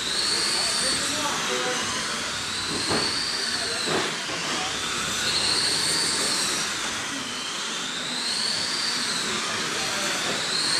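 Electric whine of 21.5-turn brushless RC late model cars lapping a dirt oval, with a high pitch that rises and falls about every three seconds as the cars speed up on the straights and ease off through the turns, over a steady hiss.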